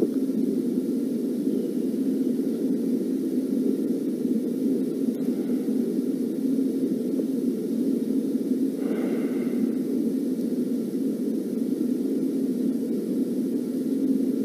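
Steady low rushing noise with a faint hum and no speech, the background noise of the room or the recording; a brief faint sound about nine seconds in.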